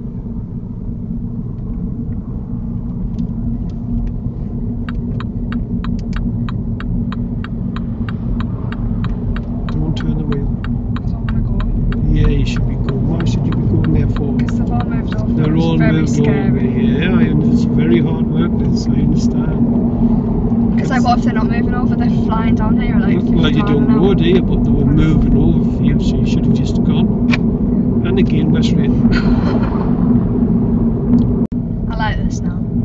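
Car engine and tyre rumble heard from inside the cabin, growing steadily louder as the car accelerates up a slip road onto a dual carriageway. Early on, a run of regular quick clicks from the turn indicator.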